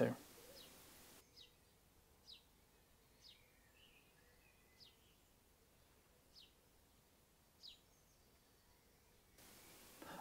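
Faint bird calls: about six short, thin, high chirps, each falling in pitch, spaced a second or so apart over an otherwise near-silent background.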